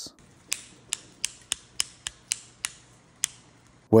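About nine sharp clicks, roughly three a second, from a cordless hair clipper's power switch being pressed over and over with no motor starting: the clipper will not come back on after cutting out.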